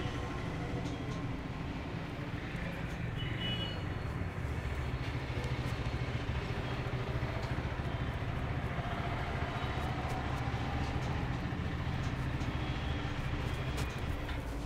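Steady low background rumble with no distinct knocks or cracks standing out.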